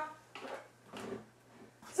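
Faint rustling and light knocking of plastic cosmetic tubes and packaging as a hand pushes them around in a full cardboard box.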